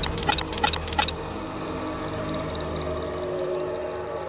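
A quick run of about eight sharp typing clicks in the first second, a sound effect for on-screen lettering, over a low, eerie synthesized music drone that carries on alone after the clicks stop.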